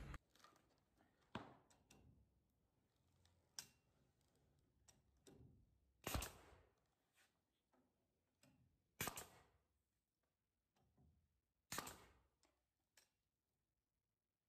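Mostly near silence, broken by five faint, short clicks or knocks spaced about two to three seconds apart.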